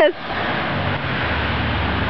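Steady rushing outdoor noise with a low rumble of traffic on the street.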